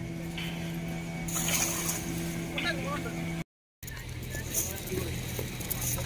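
An engine hums steadily under faint voices. The sound cuts out for a moment about three and a half seconds in and comes back as a lower, steady hum.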